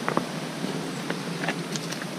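Steady rushing hiss of a mountain stream, with a few light clicks of stones being knocked near the start and about a second in.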